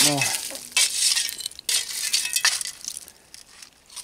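Shovel scraping into bottle-dump fill full of glass, with clinks of glass shards and bottles: two long scrapes in the first half, then quieter.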